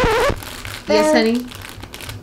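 Plastic noodle packet crinkling in a toddler's hands, with a short voice about a second in; background music cuts off at the start.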